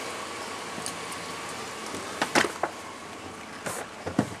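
A 2000 GMC Sierra's 4.8-litre V8, fully warm, idling quietly and steadily. A few sharp knocks and clicks come a little over two seconds in and again near the end, from the cab door and the person climbing in.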